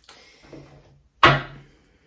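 A tarot deck being shuffled in the hands: a few soft rustles of the cards, then one sharp slap of the cards about a second in.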